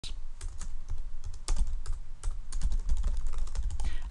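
Typing on a computer keyboard: a quick, irregular run of about sixteen key clicks.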